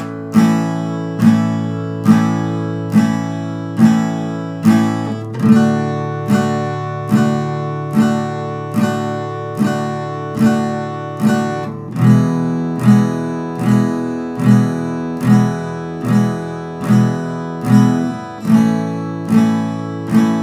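Acoustic guitar played with steady, even down strums, four to the bar, through a chord progression of A, D, E and A major. Each strum rings and fades before the next, and the chord changes about five seconds in and again about twelve seconds in.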